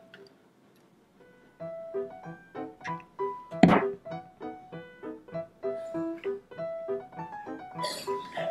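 Light background music of short, bright pitched notes, starting about a second and a half in after a near-silent opening. Once, about three and a half seconds in, a sharp thunk as a hot glue gun is set down on the table.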